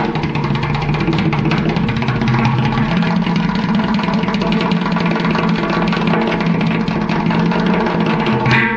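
Plastic water cooler bottle played as a hand drum in a dense, very fast roll of finger strokes. A low booming tone underneath shifts in pitch a few times.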